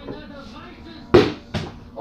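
Two sharp knocks about half a second apart, the first much the louder, over faint background voices.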